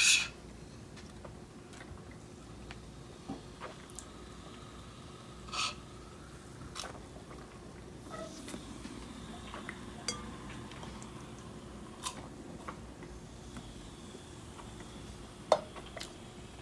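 Quiet sipping of soda through a straw from a small can, with scattered small clicks and a few brief louder sounds, one about five or six seconds in and one near the end.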